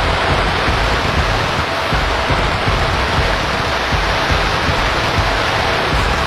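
Fireworks: a dense, steady hiss and crackle, with a stream of low thumps from bursting shells.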